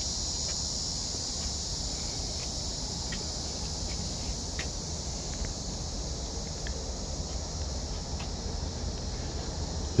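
Steady, high-pitched chorus of insects such as crickets, with a low rumble underneath.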